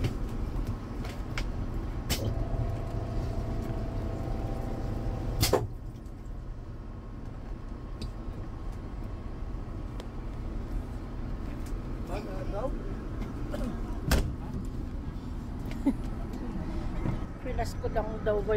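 Steady low rumble of a bus's engine heard inside the passenger cabin, with a few sharp knocks, the loudest about five and a half seconds in.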